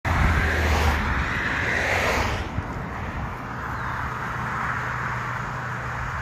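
Road traffic: a vehicle passes close by, loudest in the first two and a half seconds with a low rumble, then a steadier, quieter wash of tyre and engine noise.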